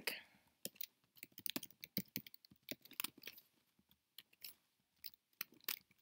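Typing on a computer keyboard: soft key clicks in quick, irregular runs.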